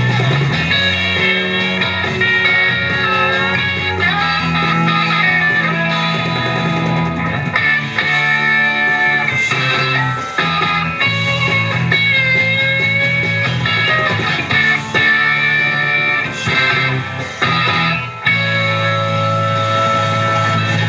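Live rock band playing an instrumental passage, electric guitar lead lines over bass and drums.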